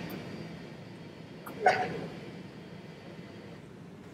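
Steady low room hum, broken once about a second and a half in by a short click and a brief breathy mouth sound from the presenter.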